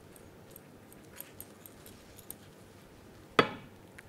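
A spatula pressing soaked toast crumbs in a glass bowl, with a few faint clicks, then one sharp clink on the glass bowl about three and a half seconds in that rings briefly.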